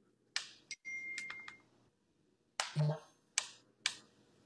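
Several sharp, irregularly spaced clicks, with a thin high tone behind a quick cluster of them about a second in.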